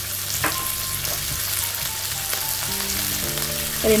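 Onions and green capsicum frying in a hot wok with soy sauce just added: a steady sizzle, with one light knock about half a second in.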